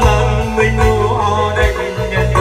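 Live band music through a PA, with keyboard, electric guitar and drums keeping a steady beat, and a man singing into a microphone over it.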